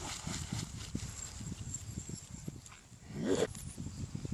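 A Scottish Terrier running through shallow water at the lake's edge: a quick patter of low splashing thuds from its paws, then a single short rising bark a little over three seconds in, the loudest sound.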